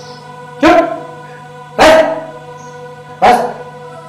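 Background music holding steady sustained notes, cut by three loud, short, sharp sounds about a second and a quarter apart.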